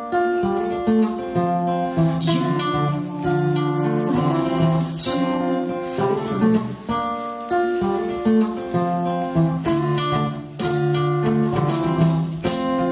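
Acoustic guitar strummed steadily in an instrumental passage of a live song, with no singing.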